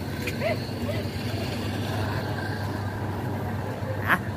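Steady low rumble of street traffic, a vehicle engine running nearby.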